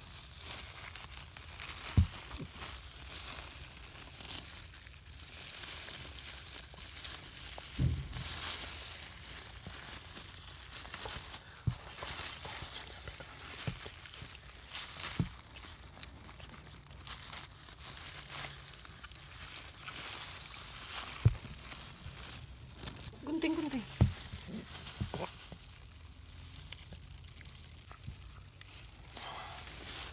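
Thin disposable plastic gloves crinkling and rustling as hands handle and tie off a newborn puppy's cord, with several soft knocks from handling. About two-thirds of the way through comes one short, wavering vocal sound.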